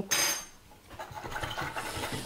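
A wire whisk stirring vinegar-sugar brine in a plastic measuring jug, a faint rubbing and scraping that starts about a second in. It is preceded by a short rush of noise right at the start.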